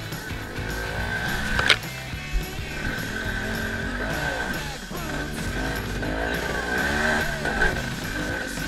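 KTM Freeride 250 dirt bike engine running under load, its revs rising and falling as it climbs. A sharp knock about two seconds in.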